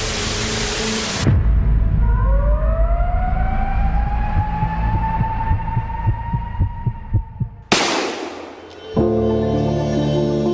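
Dramatic soundtrack sound design. A burst of hiss comes first, then a low pulse under a tone that rises in pitch and levels off. A second burst of hiss follows, then music with held chords begins near the end.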